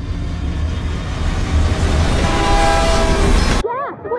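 An approaching train: a low rumble growing louder, with its horn sounding a held chord in the last second or so, cut off abruptly just before the end.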